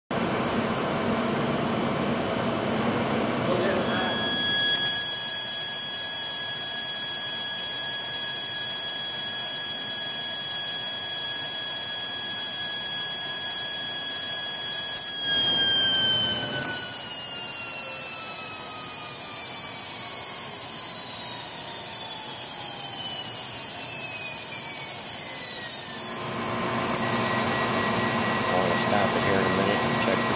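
Bryant 100,000 rpm high-speed spindle running on a test bench during its final run-off test: a steady high-pitched whine with a high hiss, which comes in about four seconds in. About halfway through, a click, and then the whine glides steadily downward for about ten seconds as the spindle coasts down after being shut off.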